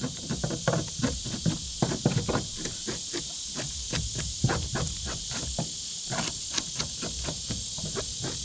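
Knife blade scraping the scales off a bluegill in quick, irregular strokes, several a second, over a steady high chirring of insects.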